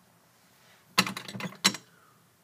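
A plastic makeup tube being handled and uncapped: a quick cluster of sharp plastic clicks and knocks about halfway through.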